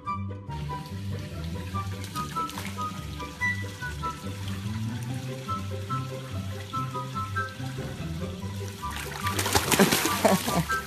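Background music with a steady hiss of running water under it. Near the end comes a loud burst of splashing as a dog enters a pool.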